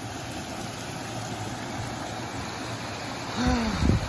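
Small mountain stream running steadily over mossy rocks. A man's voice briefly cuts in near the end.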